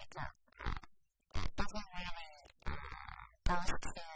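Speech only: a woman talking in short phrases with brief pauses between them.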